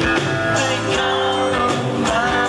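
Live pop-rock band playing a song, with guitar and a male lead vocal, at a steady loudness.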